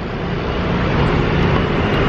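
Steady road traffic noise from cars and motorbikes on a busy city street, heard from a moving bicycle.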